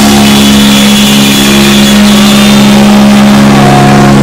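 Live rock band holding one long distorted electric guitar chord, very loud and overloading the recording.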